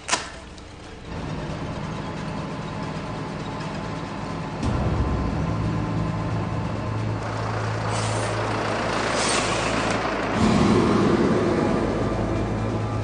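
A short sharp click, then the steady engine drone and road noise of a moving truck heard from inside its cab. The sound steps up about four and a half seconds in and changes again near the end as the driving goes on.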